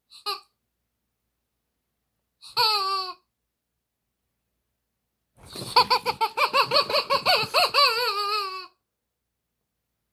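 Rubber chicken squeaky toy squawking as it is squeezed. A short squeak comes first, then a brief falling squawk about two and a half seconds in, then a long warbling scream from about five and a half seconds to nearly nine seconds in.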